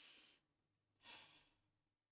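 Faint breathing: two soft breaths, one at the start and a weaker one about a second in.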